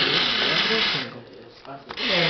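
Paper trading cards rustling and sliding for about a second as cards are dealt off the top of a deck, one at a time, while the player counts them.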